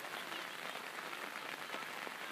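Steady light rain falling, an even hiss of drops.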